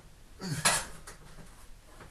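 A low thump and a brief metallic clank about half a second in: gym equipment knocked as a lifter settles onto a bench beneath a loaded barbell.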